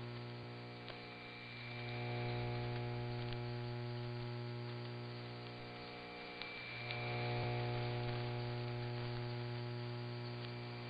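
Dead air on a shortwave AM broadcast signal: a steady low hum with a ladder of overtones over hiss and static, with no programme on the carrier. The whole signal fades down and swells back up twice as the reception fades, with a few faint static clicks.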